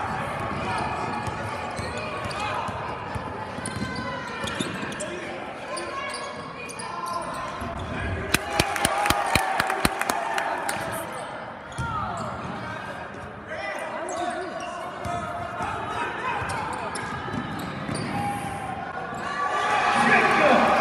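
A basketball bouncing on a hardwood gym floor during live play, with a quick run of sharp bounces about eight to ten seconds in. Crowd and player voices carry on throughout.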